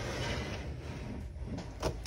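Cricut Explore Air 2 cutting machine being slid across a wooden desktop: a low, steady scraping rub that fades out about a second and a half in.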